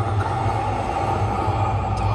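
A steady low rumble with an even background hiss, unchanging throughout.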